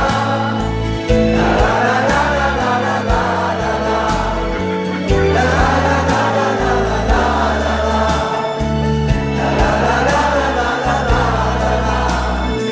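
A German song performed live: several voices singing together in chorus over backing music with a steady bass line, in sung phrases of a few seconds each.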